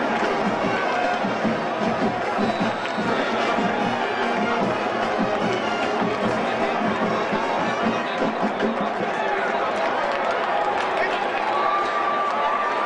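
College marching band playing in the stands over steady crowd noise.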